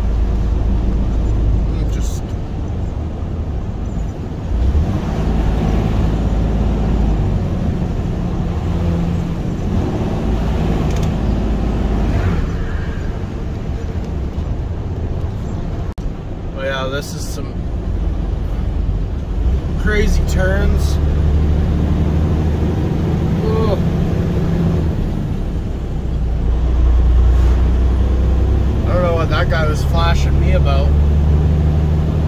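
The diesel engine of a loaded tractor-trailer heard from inside the cab, a steady low drone over road noise that rises and falls several times with engine speed on a winding mountain road.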